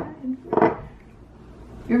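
People's voices: a short vocal burst about half a second in, then a quiet pause before speech begins near the end.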